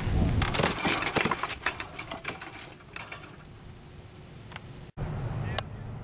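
Homemade spring-powered Frisbee thrower firing: its stretched coil springs snap back and the metal hub and frame rattle in a loud burst of metallic clattering that starts about half a second in and dies away over the next two seconds. Near the end the sound drops out briefly, and then a low outdoor rumble follows.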